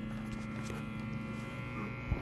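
Powered-on electric guitar amplifier idling with a steady electrical hum and buzz.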